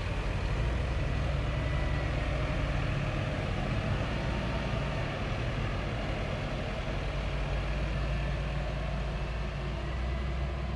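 Diesel engine of a Volvo wheel loader carrying a boom-mounted verge mower, running as a steady low drone as the machine moves along the road, easing off slightly in the second half.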